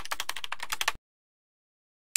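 Rapid computer keyboard typing, about a dozen keystrokes a second, that cuts off suddenly about a second in.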